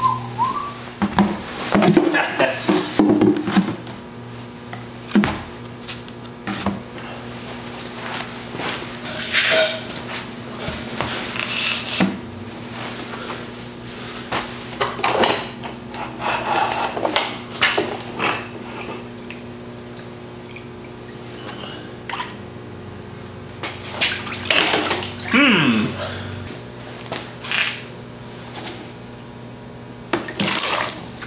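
A plastic tub holding drained engine coolant being handled and shifted on the floor: scattered knocks, scrapes and sloshing liquid, with a short falling squeak near the end, over a steady low hum.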